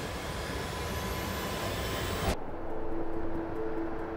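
A whoosh of noise swelling with a thin whistle climbing in pitch, cut off suddenly on a short hit a little after two seconds in. Two low held tones follow.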